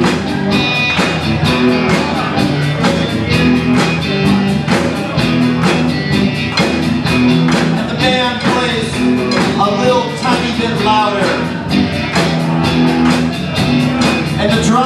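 Live rock band playing an instrumental passage: electric guitars and bass over a steady drum beat. A fiddle plays a wavering melody in the second half.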